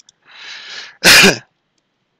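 A man sneezes: a soft breath in, then one sharp, loud sneeze about a second in.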